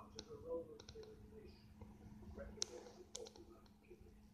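A few faint, sharp clicks at uneven intervals, the sharpest a little past halfway, over a low steady hum.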